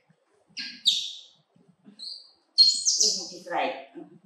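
Newborn baby monkey giving several sharp, high-pitched squeals while being handled in a towel, loudest about a second in and again near the three-second mark.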